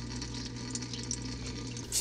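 Small submersible pond pump running with a steady low hum, while a thin stream of water from its return hose trickles and splashes into the pond as it starts refilling.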